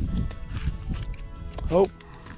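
A crappie flopping on bare concrete: a quick, irregular run of soft slaps and thumps that stops near the end.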